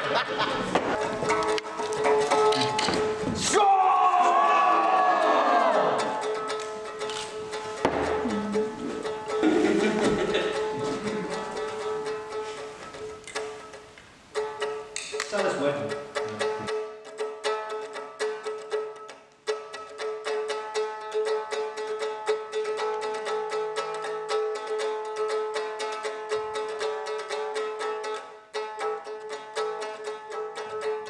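A group of people shouting and cheering together over plucked-string music with a steady drone; the last shout comes about fifteen seconds in, then the music plays on alone with evenly paced plucked notes.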